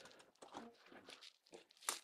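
Motorhome basement storage door being unlatched and swung up open: faint handling and rustling, then one sharp click near the end.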